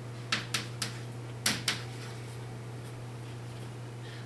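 Chalk knocking and scraping on a chalkboard as numbers are written: about five short clicks in the first two seconds, then only a steady low room hum.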